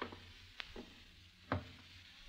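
Three faint, sharp knocks spaced unevenly, the loudest about one and a half seconds in, over the steady hiss of an old 1938 radio broadcast recording.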